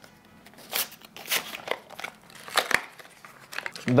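Dexcom G7's cardboard box being opened by hand: irregular rustles and scrapes of the paperboard flaps and paper inserts, with a sharp snap about two and a half seconds in.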